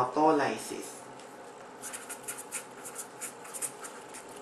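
Pen writing on a surface: a run of quick, short scratchy strokes lasting about two seconds, starting a little before halfway.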